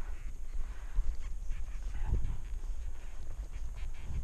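Horse walking under saddle on a dirt surface, heard from a helmet camera: faint hoof falls and tack knocks over a steady low wind rumble on the microphone, with a short animal call about two seconds in.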